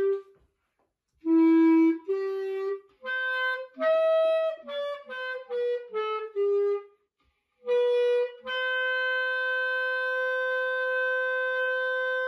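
Solo clarinet playing a slow melody with no accompaniment: a brief rest, two held low notes, a run of short quicker notes, a short pause, then one long sustained note.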